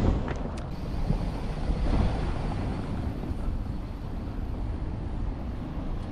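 Busy city street ambience: a steady low rumble of passing traffic, with a few faint clicks near the start.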